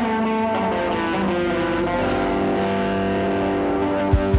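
Band music led by an electric guitar picking a melodic line over ringing, held chords, with no drum hits.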